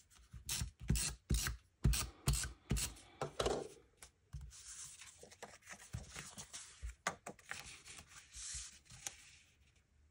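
Scrapbook paper being handled on a craft mat: a quick run of taps and pats in the first few seconds as pieces are set down, then softer sliding and rustling of paper that dies away near the end.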